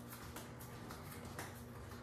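Faint footsteps on a kitchen floor, a few soft irregular ticks, over a steady low hum of room tone.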